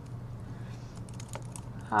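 Typing on a computer keyboard: a scattered series of light key clicks over a steady low hum.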